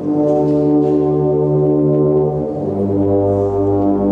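Brass band playing sustained chords, moving to a new chord about two and a half seconds in.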